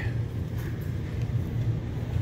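Steady low background hum of a large retail store, with a faint even hiss above it.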